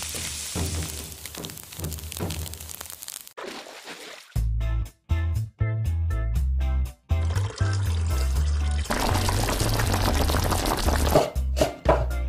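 Sliced yellow bamboo shoots sizzling as they are stir-fried in a wok, for about three seconds. After a short pause, background music with a steady bass beat takes over.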